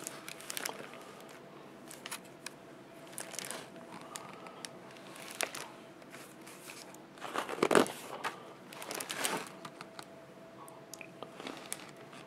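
Paper pages of a picture book being handled and turned: a series of short crinkles and rustles, the loudest a little past the middle.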